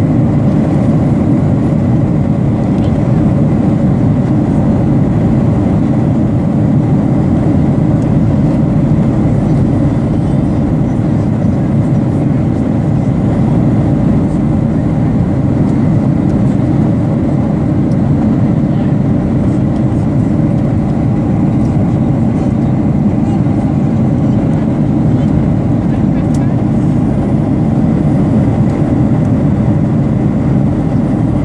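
Airliner cabin noise: the steady, low-pitched noise of the engines and airflow heard inside a passenger jet's cabin, unchanging throughout.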